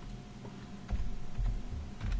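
Computer keyboard typing: a few scattered keystrokes.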